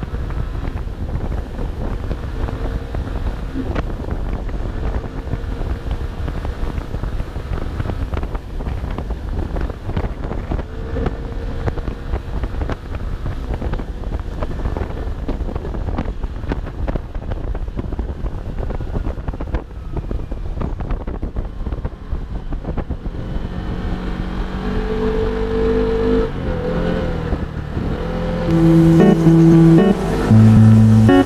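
Small scooter engine and road noise under steady wind rumble on the microphone while riding. Guitar music fades in and grows louder over the last several seconds.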